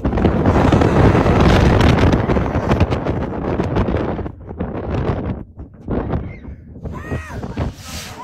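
Wind buffeting a phone's microphone on a moving roller coaster, a heavy rushing that drops off sharply about four seconds in.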